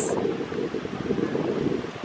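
Wind buffeting the camera's microphone: a loud, steady, rough rumble held low in pitch, with faint surf underneath.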